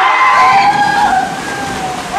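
Water splashing and churning as a group of men jump together into a small swimming pool, with men's voices yelling over it.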